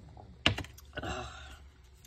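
A ceramic coffee mug set down on the craft table with one sharp knock about half a second in, followed by softer clicks and rustles of paper being handled.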